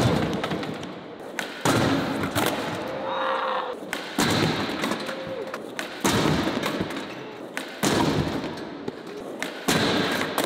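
Skateboard repeatedly landing on a skatepark ledge and sliding along it, six times, each a sharp thud followed by a scraping rumble that fades out.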